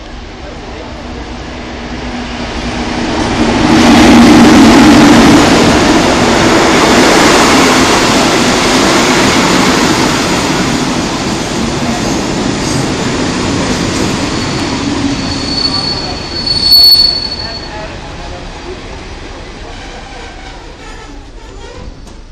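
Electric locomotive-hauled passenger train, MÁV 433 187, running into a station. The rumble of the locomotive and coaches passing close builds over the first few seconds and then slowly fades as the train slows. Near the end there is a high brake squeal, sharpest just before the train comes to a stand.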